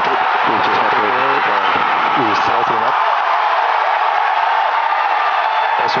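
A large crowd cheering and whooping in a steady, loud wash of voices as the Falcon Heavy's side boosters shut down and separate. A man's voice speaks over the cheering for the first few seconds.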